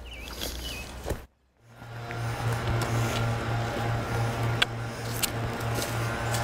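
Distant gas-powered leaf blowers running steadily: a droning engine hum with a slight pulse that starts after a brief cut to silence about a second and a half in. A few light taps sound over it near the end.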